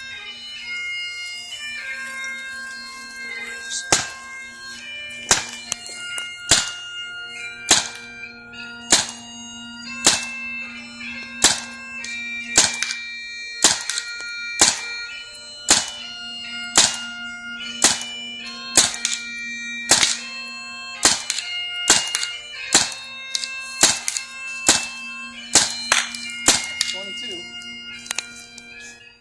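Bagpipe music, a steady drone under a slow melody, with a paintball marker firing sharp single shots over it, about one a second from about four seconds in, a little over twenty in all.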